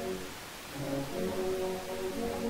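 Brass band playing sustained chords of a hymn tune. The sound eases about half a second in, between phrases, then comes back in with a low note and fuller chords.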